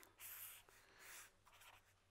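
Faint scratching of a pen on paper in three short strokes, as a line of handwriting is underlined and a new letter begun.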